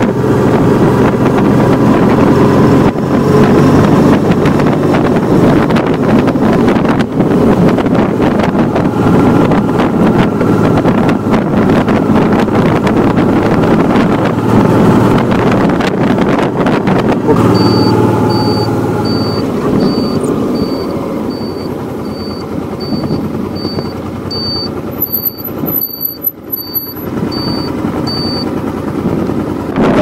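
Honda Deauville V-twin motorcycle running at road speed with heavy wind rush on the microphone. It slows to a stop in the second half, while a short high electronic beep repeats a little over once a second.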